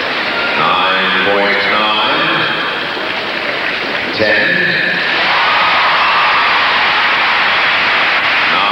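Arena public-address announcer reading out the judges' marks, with a steady crowd noise swelling about four seconds in and holding as the scores come up.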